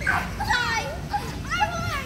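Young children shouting and squealing in high voices: a wavering cry about half a second in and another near the end.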